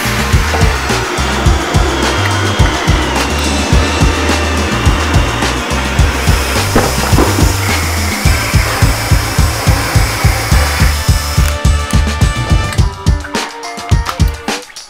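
Background music with a steady drum beat, over cordless drills driving hole saws through a wooden board, their motors giving a steady high whine.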